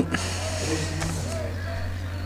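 Faint voices calling out across an open football ground during a stoppage, over a steady low hum.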